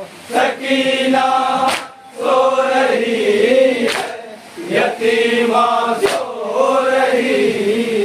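Men's voices chanting an Urdu nauha (Shia mourning lament) together in long sung lines, led by reciters at microphones. A sharp slap of hands on chests (matam) lands about every two seconds and keeps the beat.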